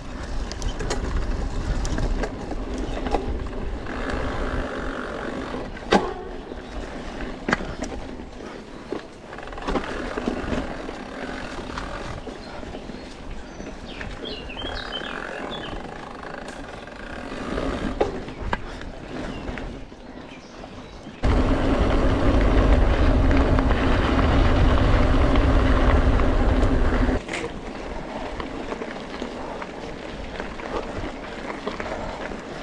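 Mountain bike ridden along a dirt and gravel trail: tyres rolling over the ground, with the bike rattling and a few sharp knocks over bumps, and wind on the microphone. Past the middle a louder steady buzzing noise comes in suddenly, lasts about six seconds and stops suddenly.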